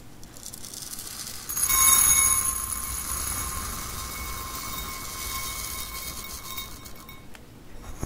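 Crushed walnut-shell bedding granules poured in a stream into a glass bowl. The sound is loudest as they first strike the empty bottom about a second and a half in, and the bowl rings with a steady high tone under the rush of granules until the pour stops about seven seconds in. A few light clicks follow near the end.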